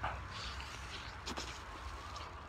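Faint chewing of meat off the bone, with a few soft mouth clicks, over a steady low background rumble.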